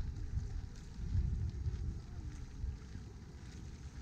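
Wind buffeting the microphone: an uneven, gusting low rumble, strongest in the first two seconds and easing off after that.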